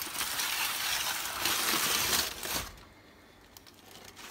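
Aluminium foil crinkling and crackling as it is handled and pulled away from a smoked brisket, loud for about two and a half seconds and then dying down to a few faint rustles.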